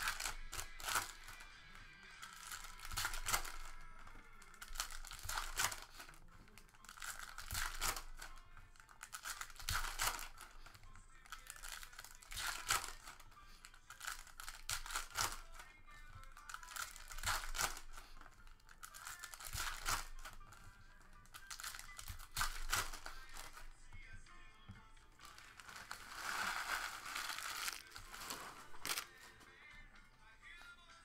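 Foil trading-card packs being torn open and handled, the wrappers crinkling and tearing in short bursts every two to three seconds, over background music.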